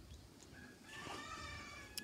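A faint animal call, pitched and about a second long, starting about a second in.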